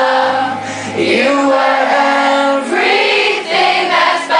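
Concert audience singing along together, many voices at once, over a strummed acoustic guitar.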